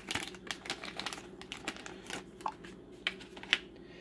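Small plastic clicks and crinkles of hands handling an opened LEGO minifigure blind bag and pressing the minifigure's parts together, irregular throughout, with a sharper click about three and a half seconds in.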